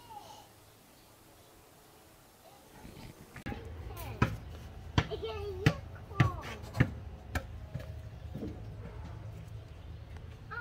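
Sharp metal clanks and taps, about eight of them over four seconds, from steel expansion-rack brackets being handled against the steel body of an offset smoker's cooking chamber. They begin after about three seconds of near quiet, over a steady low hum.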